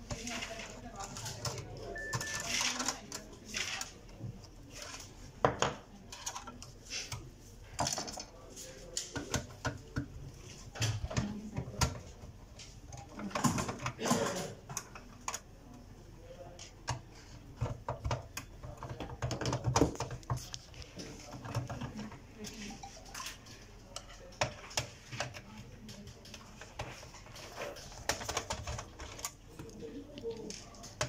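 Irregular clicks, taps and light metallic knocks from hands handling the opened metal chassis and circuit board of an Epson LQ-310 dot-matrix printer, with the board taken out.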